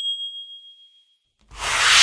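Notification-bell sound effect: a single bright ding rings and fades away over about a second and a half. Then a whoosh swells up and ends in a low hit near the end.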